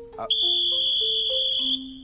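Referee's whistle blown in one steady, shrill blast of about a second and a half, starting about a third of a second in and cutting off shortly before the end.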